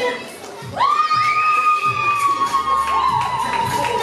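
A crowd of children shouting and cheering. After a brief lull, one long high-pitched scream starts about a second in and is held for about two seconds over the crowd's cheers. The outburst greets a judges' decision in a dance battle.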